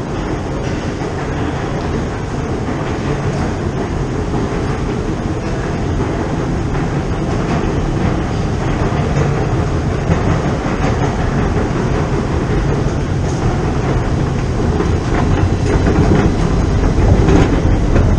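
Steady, rumbling and clattering machinery noise inside a London Underground station, growing gradually louder as the escalators are reached.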